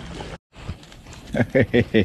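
Steady wind and choppy water noise that cuts off abruptly a moment in; after a short pause, a man laughing in quick bursts.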